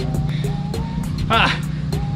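Background music with a steady beat and sustained notes. A short spoken "ah" comes about a second in.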